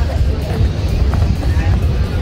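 Wind buffeting the phone's microphone: a steady, loud low rumble, with faint voices of people close by.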